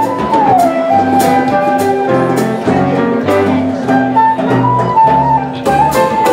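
A live jazz quartet plays. A flute carries a high melody line of long held notes, sliding down in pitch shortly after the start, over piano chords, bass and a drum kit with cymbals.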